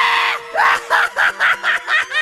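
Spirit Halloween 'Poor George' clown animatronic's voice effect: a loud scream ending just under half a second in, then a run of short, choppy laugh-like cries, about four a second.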